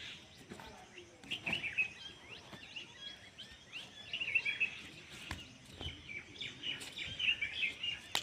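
Small birds chirping in quick, repeated twittering calls, with a few faint short knocks among them.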